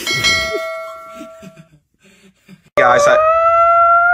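A click and a bell-like chime that rings on and fades away over about a second and a half. After a short gap, a small white dog starts a long, steady howl that runs on to the end.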